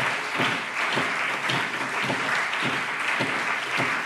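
Applause from the members of a parliament chamber: many people clapping steadily.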